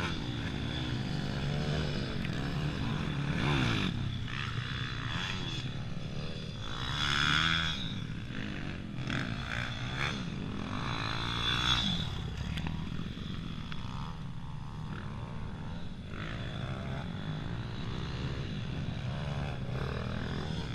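Dirt bike engines revving up and falling back as the motocross bikes ride the track, over a steady low hum, swelling loudest about four, seven and twelve seconds in.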